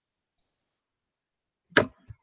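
Dead silence on a noise-gated video-call line, then one brief, sharp whoosh near the end picked up by the lecturer's microphone.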